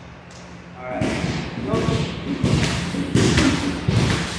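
Dull thumps and bumps on padded grappling mats, coming thick from about two and a half seconds in, with people talking.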